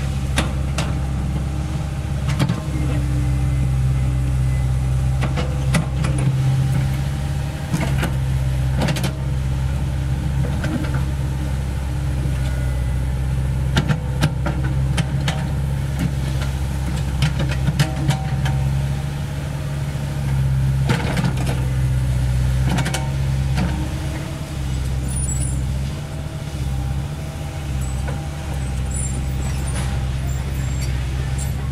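CAT 307E2 mini excavator's diesel engine running steadily under digging work, its note dipping and rising a few times. Frequent short knocks and clanks are scattered through it.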